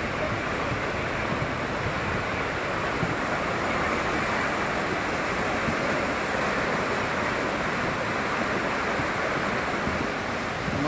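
A river in flood, fast muddy floodwater rushing past in a steady, loud wash of water noise.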